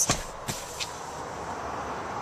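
A few sharp clicks and knocks from the rear seat's fold-down centre armrest and cupholder console of a 2010 Chevrolet Equinox being handled, the loudest right at the start and another about half a second later, then a steady faint hiss.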